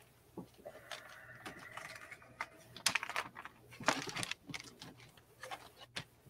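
Faint clicks and crinkling from plastic-packaged coins being handled, loudest around the middle, with a faint held hum for about two seconds near the start.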